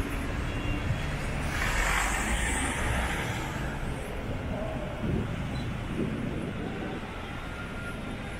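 Road traffic: low engine rumble of street vehicles, with one vehicle passing close by about two seconds in, its tyre and engine noise swelling and fading.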